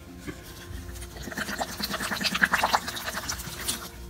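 Water poured onto freshly packed potting soil in a ficus pot, splashing and soaking in with an irregular crackle. It starts about a second in, is loudest in the middle and stops shortly before the end.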